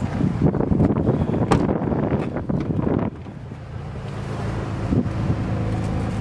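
Wind buffeting the microphone, loud and gusty for about three seconds before easing off, leaving a quieter steady low hum underneath.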